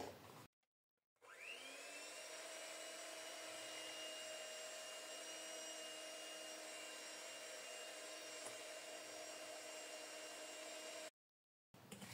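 Electric hand mixer running, its beaters whisking eggs and sugar in a glass bowl until the mix turns pale: a faint, steady motor whine that rises in pitch as it spins up about a second in, holds level, and cuts off abruptly near the end.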